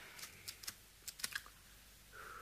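A few faint, light clicks and taps, about six within a second and a half: the small handling sounds of a cigarette being taken and passed over.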